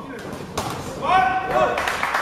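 Men shouting in a large hall over an amateur boxing bout, the calls drawn out and loud from about half a second in. A few sharp thuds of gloved punches land among the shouts.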